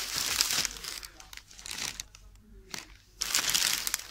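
Close rustling and crinkling of handled material right at the microphone, in three bursts: a loud one at the start, a smaller one in the middle and a loud one near the end.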